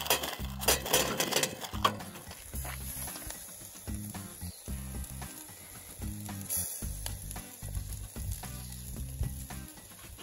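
Charcoal briquettes poured from a bag, clattering and knocking onto a foil-lined tray for about two seconds. Then background music over a steady high hiss.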